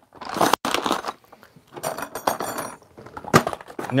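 A brown paper bag of screws crinkling and rustling as it is handled into a plastic tool box, with light clinks of fasteners and a couple of sharp knocks.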